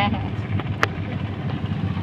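Steady low hum with a faint regular pulse, and a single sharp click a little under a second in.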